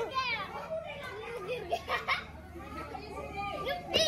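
Children's voices calling and chattering, with a couple of brief sharp cracks about two seconds in.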